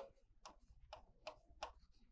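Faint, irregular ticks of a pen tip tapping against a writing board as the words are written, about half a dozen over two seconds.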